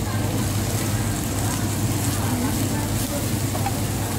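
Busy restaurant ambience: a steady low hum under faint, indistinct chatter of other diners.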